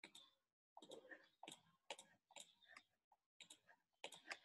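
Faint, irregular clicking, several clicks a second with a couple of short pauses, from computer input as a drawing on a digital whiteboard is erased stroke by stroke.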